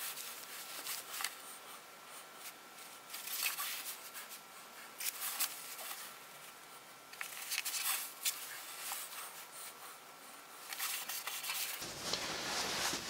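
Faint, scattered handling sounds of double-sided tape and thin wooden guide strips being pressed down onto a plywood board: short rustles and small clicks coming in a few separate groups.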